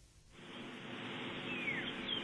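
A brief near-silent gap, then outdoor ambience fades in as a steady hiss, and a bird gives a single whistle that slides downward about a second and a half in.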